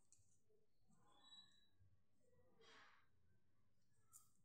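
Near silence: faint rustles and light clicks of wooden knitting needles and wool yarn being worked by hand, with one soft breath a little before three seconds in.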